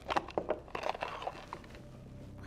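A small cardboard gift box rattling as it is opened and handled, a quick run of light clicks and scrapes that dies down about a second and a half in.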